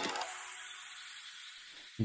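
A high hissing wash that fades slowly over about two seconds, left after the song stops.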